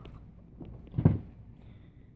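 Quiet room tone with one short, soft thump about a second in.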